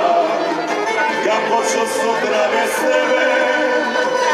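Tamburica band playing live, with a man and a woman singing over plucked string accompaniment and bass.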